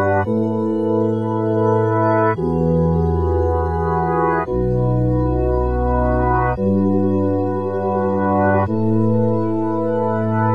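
Instrumental hip-hop beat: sustained organ-like keyboard chords, each held about two seconds before the next, with no drums.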